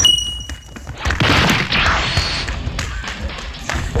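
Thumps and a burst of crashing, scuffling noise from a playful tussle between two people, starting about a second in and lasting over a second, over background music. A short high ding sounds at the very start.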